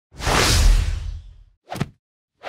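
Logo-intro whoosh sound effect: a long whoosh with a deep low rumble that fades out over about a second and a half, followed by a short second swish near the end.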